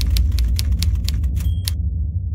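Typewriter key strikes as a sound effect, about five or six clacks a second, over a low steady drone, with a brief high ring about one and a half seconds in.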